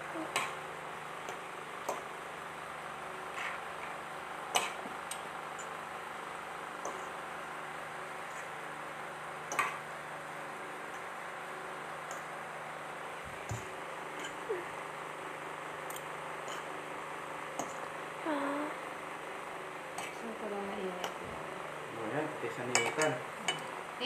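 Metal tongs and a fork clinking and scraping against a ceramic plate as spaghetti is tossed with pesto sauce, in scattered light clicks over a steady background hiss.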